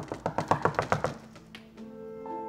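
Rapid knocking on a door, about a dozen quick knocks in just over a second. Background music comes in near the end.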